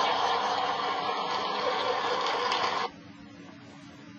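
Audience laughter played through a computer's speakers; it cuts off abruptly about three seconds in, leaving a faint low hum.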